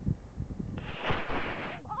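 Pip Squeak model rocket's motor igniting and burning: a sudden rushing hiss that starts about a second in and lasts about a second.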